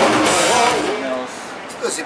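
Live rock band playing with electric guitar and drum kit, fading out about a second in.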